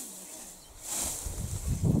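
Hand scythe swishing through tall, dense grass and weeds: one cutting stroke about a second in. A low rumble builds near the end.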